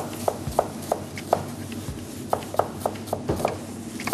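Chef's knife slicing a red onion on a wooden cutting board: a dozen or so irregular knocks of the blade against the board, roughly three a second.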